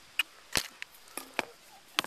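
Handling noise: several sharp, irregular clicks and taps as small plastic containers and a packet are picked up and set down.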